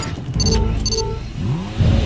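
Channel logo sound-effect sting: a deep rumble under two bright chime-like pings about half a second apart, with a rising sweep building near the end.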